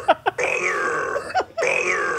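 A short clip of a man's voice saying "brother", played on a loop so the same word repeats about once a second.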